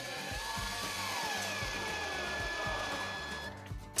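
Cordless drill driving a screw into the wooden frame to fix a D-ring, its motor whirring steadily with a whine that falls in pitch, then stopping about three and a half seconds in.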